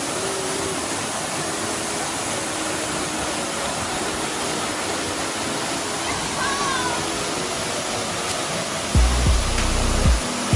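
Waterfall pouring into a pool: a steady, even rush of falling water. Near the end, a few low thumps break in.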